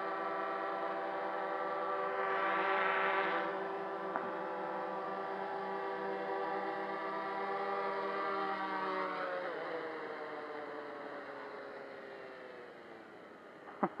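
Ideafly MARS 350 quadcopter's motors and propellers whining steadily as it descends and lands itself under return-to-home. Near the end, after touchdown, the whine falls in pitch and fades as the motors spin down.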